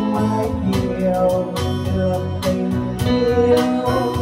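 A live Vietnamese song: a woman singing into a microphone over a Yamaha electronic keyboard accompaniment with a steady beat.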